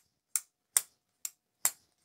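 A Kizer Chili Pepper button-lock folding knife being worked open and shut, giving four sharp clicks about two a second as the blade snaps into place and is released.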